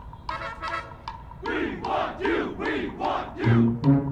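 Drum corps hornline members shouting together in unison, a few calls on an even beat. Near the end the brass enters with a loud, sustained low chord.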